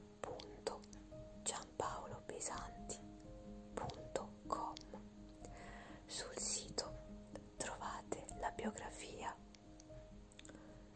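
A woman whispering over soft background music of long held notes.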